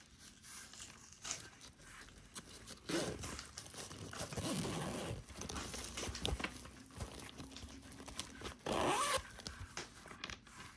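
Fabric zippered pencil case being handled, with its zipper rasping and the fabric rustling and scraping under the hands; a short, louder zipper rasp near the end.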